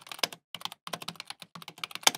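Typing sound effect: quick runs of key clicks with short pauses between them, keeping time with text typing itself out letter by letter.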